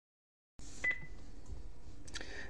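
A short high electronic beep about a second in, over faint room noise that begins after a moment of dead silence.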